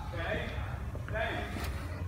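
Faint, indistinct speech over a low, steady background hum.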